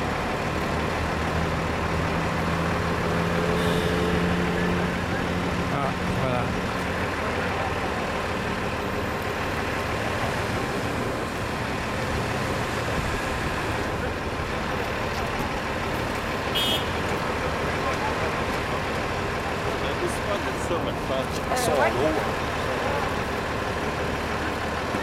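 Street traffic noise with a city bus's diesel engine idling close by, its steady hum strongest in the first few seconds, under the murmur of people's voices.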